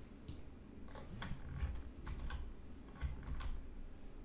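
Computer keyboard keys clicking: an irregular run of a dozen or so keystrokes, with a few duller thuds among them.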